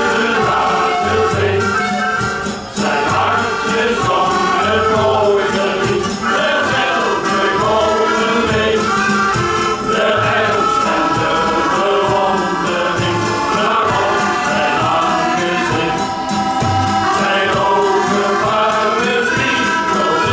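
Men's shanty choir singing a sea shanty together, accompanied by accordions, with a steady low bass beat about once a second.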